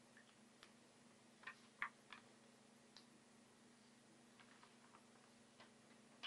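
Faint, scattered light clicks and ticks, three close together between one and a half and two seconds in and a few softer ones later, over a low steady hum.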